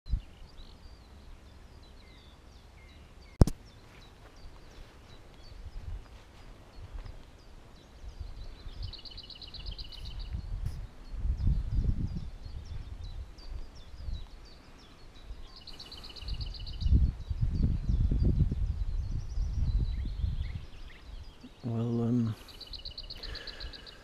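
Wind buffeting the microphone in gusts, with a bird's rapid trilled call heard three times and a single sharp click a few seconds in.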